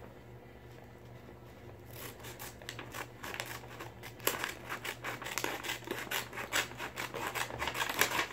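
Scissors cutting through a sheet of paper in a quick run of snips, starting about two seconds in, cutting a strip off the sheet.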